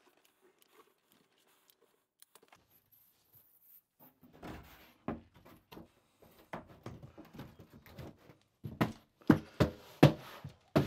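A large foam tile backer board being handled and set against the wall framing: scraping and knocks begin about four seconds in, with several loud thumps near the end as it is pushed flat into place.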